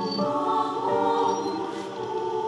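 Choir singing held chords, the voices moving to new notes every half second or so.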